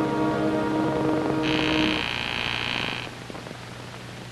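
A sustained orchestral film-score chord dies away about halfway through. Over its end an electric door buzzer sounds one steady, high-pitched buzz for about a second and a half.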